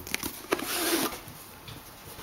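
Handling noise of a cooling towel being moved over a paper-covered table: a few soft clicks, then a brief rustle about half a second in, fading to quiet room tone.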